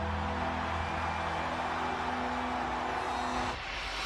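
Excavator engine sound effect: a steady low drone that cuts off about three and a half seconds in.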